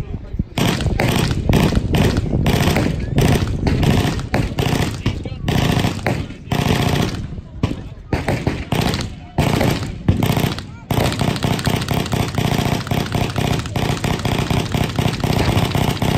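Several machine guns firing at once, long overlapping bursts of rapid shots with a couple of short lulls, becoming a dense, even stream of fire from about eleven seconds in.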